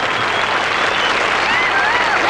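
Audience applauding steadily, with a few thin rising and falling tones above the clapping in the second half.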